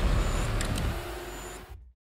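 Film trailer sound effects: a deep rumble with a few sharp clicks, fading and then cut off abruptly to dead silence near the end.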